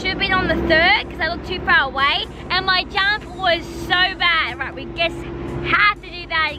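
A girl talking to the camera, over a steady low hum.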